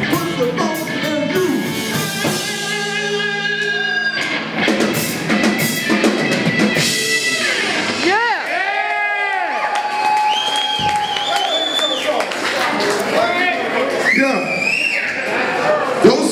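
Live funk band playing, with drums and long held notes; around the middle the notes swoop up and down in repeated pitch bends.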